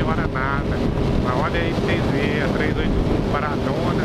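Wind rushing over the microphone of a motorcycle moving at road speed, with a steady engine hum underneath.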